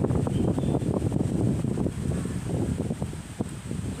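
Sandstorm wind buffeting the microphone: a loud, rumbling rush that surges and eases in gusts.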